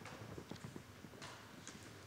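Quiet room tone of a large hall: a low steady hum with faint scattered clicks and knocks, such as small movements in the seated audience.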